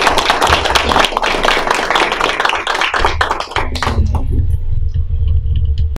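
Audience applauding, the clapping thinning out and stopping about four seconds in; a low rumble follows.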